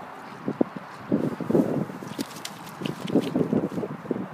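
Rustling and knocking handling noise in grass and mud as the landed mullet is shifted beside a pair of rubber boots. It comes in two irregular bursts, with a few sharp clicks between them.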